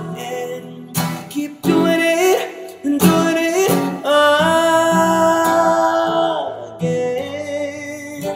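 Classical acoustic guitar strummed and plucked as accompaniment, with a man singing without clear words. He holds one long note through the middle and lets it slide down at the end.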